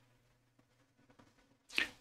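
Near silence with a faint steady low hum of room tone, then a quick audible breath in near the end, just before he starts to speak.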